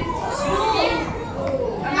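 Small children's voices chattering and calling out over one another as they play.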